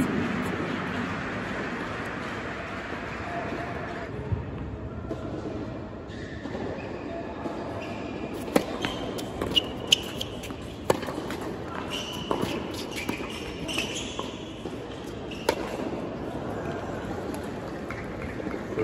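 Tennis rally on an indoor hard court: sharp racket strikes and ball bounces about a second apart from about eight seconds in until near the end, with brief rubber shoe squeaks, all echoing in a large hall. It opens on a fading wash of crowd noise.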